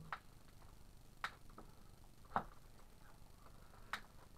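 A few light, irregular clicks and taps of small objects being handled on a wooden tabletop, the loudest a little past halfway.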